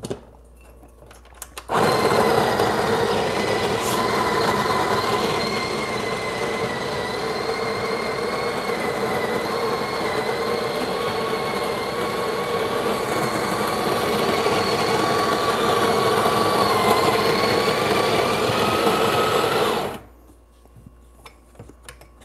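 Breville Barista Express's built-in conical burr grinder grinding an 18 g dose into the portafilter. It starts about two seconds in and stops abruptly near the end, with a steady high-pitched whine over the grinding noise that rises a little just before it stops; the owner thinks the high pitch is normal.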